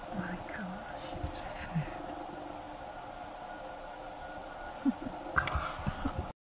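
Hushed whispering voices over a steady background hiss, with a few short clicks and knocks near the end.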